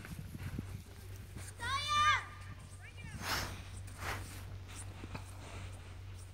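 A child's distant high-pitched call, rising and falling, about two seconds in, with a shorter call a second later. Faint scattered thuds and a low steady hum lie underneath.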